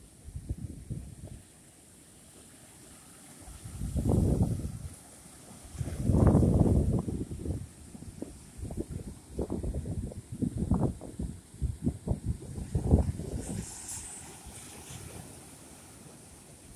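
Wind buffeting the microphone in irregular gusts, the strongest about four and six seconds in, over the wash of surf breaking on rocks.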